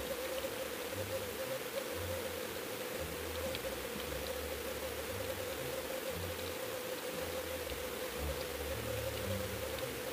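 Sound picked up by a GoFish Cam fishing camera out on the line: a steady mid-pitched hum over low, uneven rumbling of water, with a few faint clicks.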